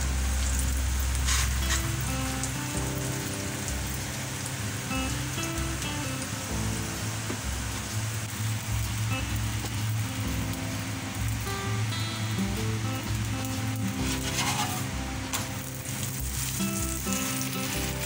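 Masala chapathi sizzling steadily in a nonstick frying pan, with a couple of brief clicks of the steel spoon, under background music.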